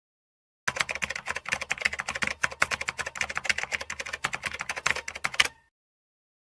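Typing sound effect: a fast, irregular run of key clicks that starts just under a second in and stops abruptly about half a second before the end.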